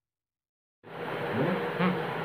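Silence for nearly a second, then a steady buzzing hiss of room noise cuts in abruptly, with a man's voice starting to be heard soon after.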